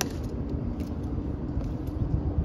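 Tomb guards' metal-tapped shoes clicking on the stone plaza as they march, a sharp click at the start and fainter ones about every half second. Underneath is a steady low rumble with a faint hum.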